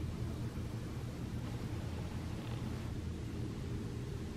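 Steady low rush of blizzard wind, even throughout, with no thunder clap.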